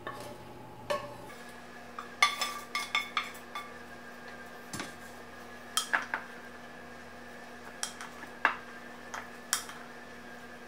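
A wooden spoon scraping food out of a metal skillet into a ceramic mixing bowl, then stirring the mixture in the bowl: scattered, irregular clinks and knocks, a few with a brief metallic ring.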